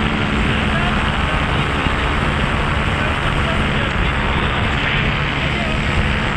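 Paramotor engine and propeller running steadily in flight, mixed with heavy wind rush on the microphone.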